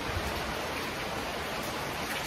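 A steady, even hiss of background noise, unbroken through the pause in speech.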